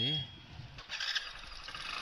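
Riding noise from a bike-taxi motorcycle on the move: an even rushing noise of engine, road and wind, with a louder swell about a second in.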